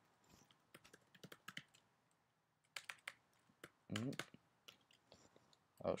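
Typing on a computer keyboard: scattered key clicks in short runs. About four seconds in there is a brief vocal sound rising in pitch.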